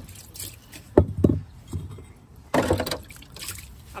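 Water splashing and sloshing as a kitchen item is swished and rinsed by hand in rainwater pooled in a black plastic tray. There are two short splashes about a second in and a louder burst of splashing a little past halfway.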